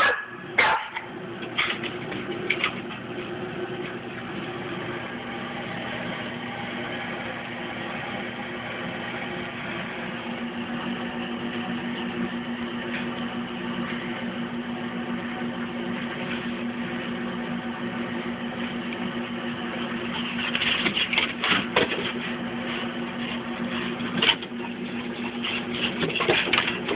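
A dog barking in short sharp barks, a few near the start and a cluster near the end, over a steady low hum.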